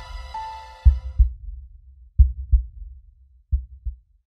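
Heartbeat sound effect in a film soundtrack: three low double thumps, evenly spaced a little over a second apart, the last pair fainter. A held music chord fades out about a second in.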